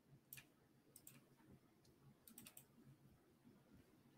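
Near silence broken by a few faint computer-mouse clicks: one near the start, a pair about a second in, and a quick run of several around two and a half seconds in.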